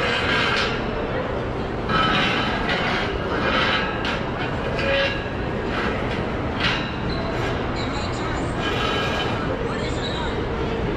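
Orange metal chairs being dragged and scraped across a tiled floor in several short, rattling bursts, over the steady hubbub of a busy indoor food court.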